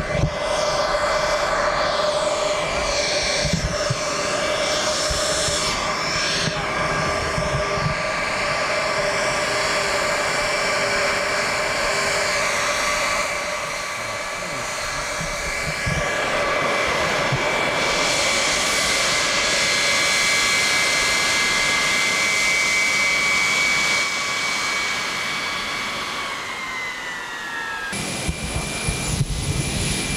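Jet engines of Air Force One, a Boeing 707, running on the ground with a steady high whine. Near the end the whine's pitch slides down a little, then the sound changes abruptly.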